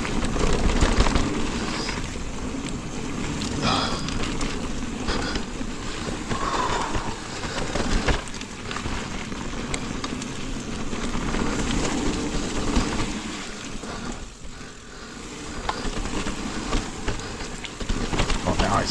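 Mountain bike rolling along a dirt singletrack: steady tyre and wind noise with scattered clicks and rattles from the bike over the ground, easing briefly quieter near the end.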